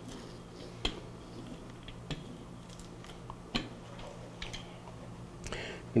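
Faint, sparse clicks, about five over a few seconds, as the charged mylar film of an electrostatic dust-print lifter is rolled flat against the floor to push out air bubbles, over a low steady hum.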